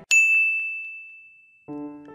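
A single high, bell-like cartoon ding sound effect, struck once and ringing away over about a second and a half. Soft music tones come in near the end.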